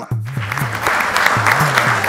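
Studio audience applauding, a dense steady clapping that breaks out right after the comedian's line, with background music under it.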